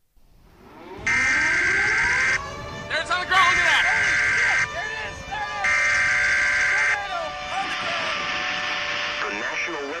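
Emergency Alert System data bursts: three harsh, buzzing electronic bursts, each a little over a second long, that open a broadcast tornado warning. Under them, pitched tones rise during the first second and then hold steady, like an outdoor warning siren winding up.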